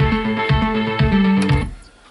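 Guitar-based music played from a CD on a Sony CDP-C315 five-disc changer, cutting off about one and a half seconds in as the player, in shuffle play, leaves the track to pick another.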